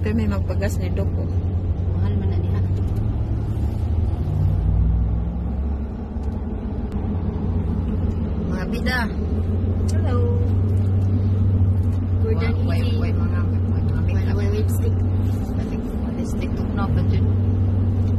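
Steady low road-and-engine rumble inside a moving car's cabin, briefly quieter a few seconds in.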